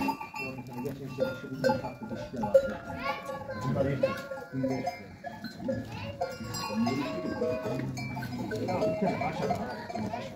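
A large herd of goats crowded in a pen, many bleating over one another, with high-pitched calls rising and falling.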